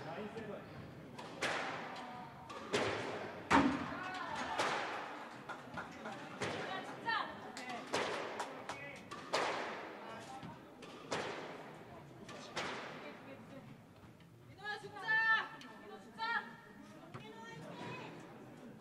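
A squash ball being hit back and forth in a rally: sharp racket strikes and ball hits on the walls, each with a ringing echo from the court, about one every second or so. The hits stop about two-thirds of the way through, and brief voices follow.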